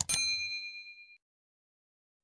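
A mouse-click sound effect followed at once by a bright bell ding, a notification-bell chime that rings for about a second and fades away.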